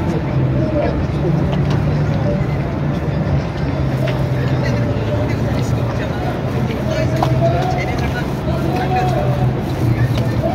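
Steady low drone of motorboat engines on the river, under indistinct crowd voices.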